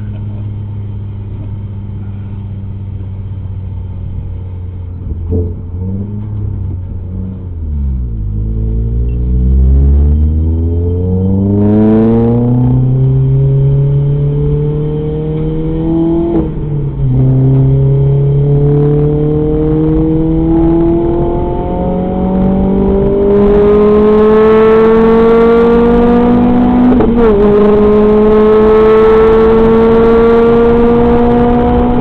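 Renault Clio RS engine heard from inside the stripped, roll-caged cabin. It runs steady and low at first, then from about eight seconds in the car accelerates hard and the engine note climbs repeatedly in pitch through the gears, dropping back at each of about four upshifts.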